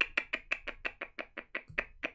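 Computer keyboard keys tapped in a quick, even run of light clicks, about six a second, growing fainter near the end.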